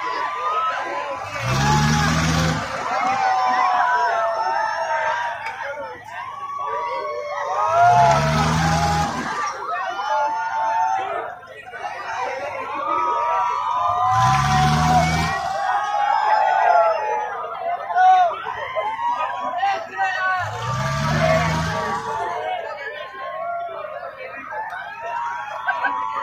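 Riders on a swinging pirate-ship fairground ride shouting and screaming, with a deep whoosh each time the boat sweeps past, about every six seconds.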